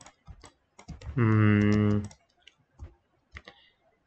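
Scattered single clicks of a computer keyboard and mouse. About a second in, a drawn-out vocal sound is held steady for about a second.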